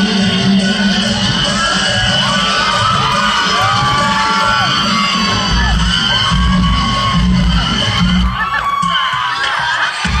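Loud pop music with a steady beat played over a PA system in a large hall, with an audience shouting and cheering over it. The music drops away about eight seconds in, leaving the shouting and cheering crowd.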